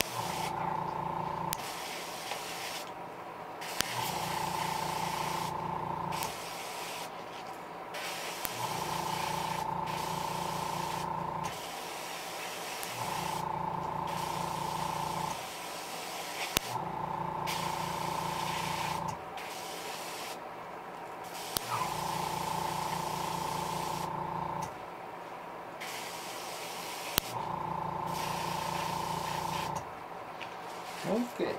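Airbrush spraying paint onto a fishing lure: a hiss of air that comes and goes as the trigger is worked. A steady motor hum with a whine, typical of the airbrush's small compressor, switches on and off in seven runs of two to three seconds each.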